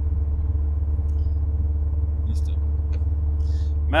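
Steady low engine and road drone heard inside the cabin of a car-built A-traktor on the move, with a steady hum at two pitches over it.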